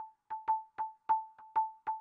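ATV aFrame electronic hand percussion played with quick finger strikes, about four a second. Each hit gives a short click and a brief ringing tone, always at the same pitch. The sub timbre is set to its 'natural' frequency setting.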